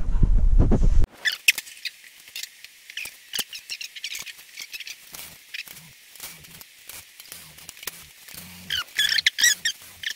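A loud low rumble in the first second, then a cordless ratchet working on the cylinder head bolts of a small-block Ford engine. Its clicks and short squeaks come irregularly and sound thin and high.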